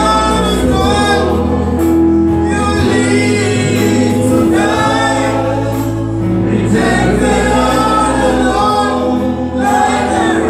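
Gospel worship song sung by a group of voices, men and women together, over loud music with long-held low notes.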